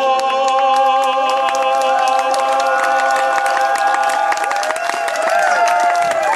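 A woman's sung note held at one steady pitch, ending after about four and a half seconds, while an audience claps and cheers with whoops that build toward the end.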